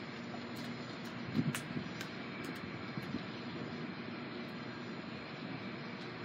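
Steady background rumble and hiss with a faint steady hum, and a few faint clicks in the first two seconds.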